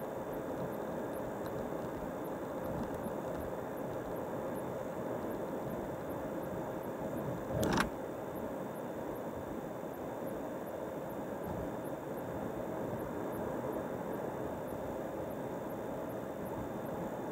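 Steady road and engine noise heard from inside a car cruising on a highway, with one short, sharp knock a little before halfway through.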